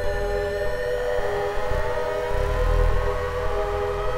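Soma Lyra-8 organismic synthesizer drone: several steady, sustained tones over a deep rumble that swells and fades. About a second in, one voice starts a slow upward glide in pitch, siren-like, as its tune knob is turned.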